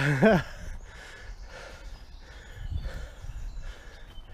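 A man breathing hard in repeated breathy huffs as he scrambles up a steep earth bank, with low thumps around three seconds in.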